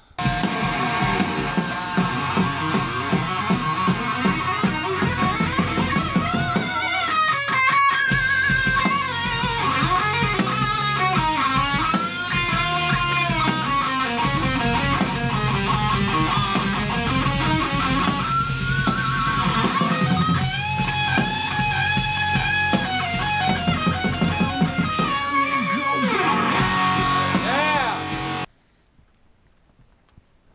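Distorted electric guitar playing a lead solo with bent notes and vibrato over a full band backing. It cuts off suddenly near the end.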